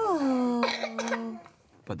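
A voice drawing out a falling note that levels off and holds for over a second, with a breathy, cough-like burst partway through.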